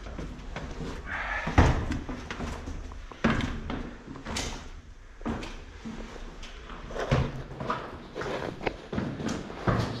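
Footsteps going down brick steps and across loose rubble in a brick tunnel, an irregular run of scuffs and knocks, the loudest about one and a half seconds in.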